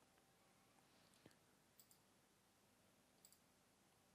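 Near silence with a few faint computer mouse clicks, the loudest about a second in.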